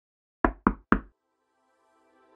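Three quick knocks, like knuckles on a door, used as an intro sound effect. Faint music begins to fade in near the end.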